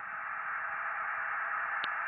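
ICOM IC-575A transceiver receiving on the 10-metre band between overs: steady receiver hiss and static from its speaker, with a single click near the end.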